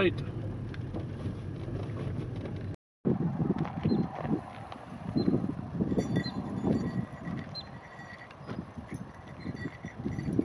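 Low steady rumble of a car creeping over gravel, heard inside the cabin as it pulls into a parking spot. After a sudden break of silence about three seconds in, outdoor wind buffets the microphone in uneven gusts.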